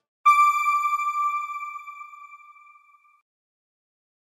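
A single bright electronic chime, the logo sting of a news outro, struck about a quarter second in and ringing out as one clear ping that fades away over about three seconds.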